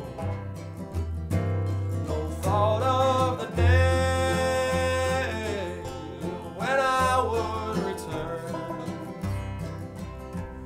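Acoustic bluegrass band playing between sung lines: banjo, acoustic guitar, mandolin and upright bass, with a long held melody note a few seconds in and another shorter one around seven seconds in.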